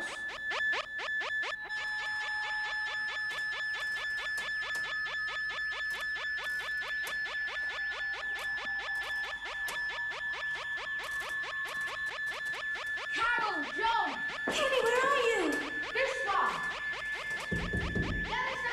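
Electronic sci-fi soundtrack: a steady high tone over a fast, even electronic pulse, giving way to warbling, swooping tones in the last few seconds.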